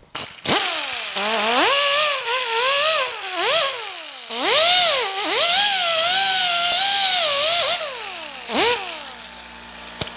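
Die grinder spinning a wire cup brush against sheet steel, stripping paint off the lip of a hole. Its whine rises and falls in pitch as the brush is pressed on and eased off, then winds down near the end after one last short burst.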